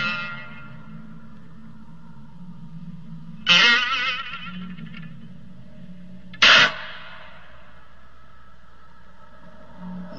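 Biwa (Japanese lute) struck hard with its plectrum: two sharp plucked strokes, about three and a half and six and a half seconds in, each ringing out and dying away. A low steady hum lies underneath.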